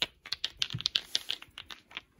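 Light, irregular clicks and taps, a dozen or so in two seconds, from fingernails tapping and handling a small clear faceted object.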